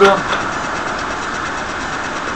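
A steady, fairly loud background hum and hiss that does not change, like a running motor or fan.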